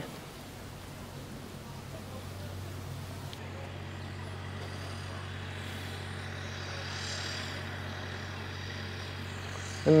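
A steady low machine hum, with a faint higher hiss joining about three seconds in.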